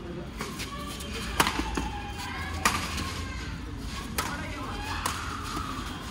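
Badminton rackets striking a shuttlecock during a rally: four sharp hits roughly a second apart, with voices in the background.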